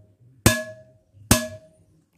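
An old circular saw blade, held by its rim, struck twice; each strike gives a short metallic ring that dies away quickly. It is a blade failing the ring test, which marks it as no good for knifemaking.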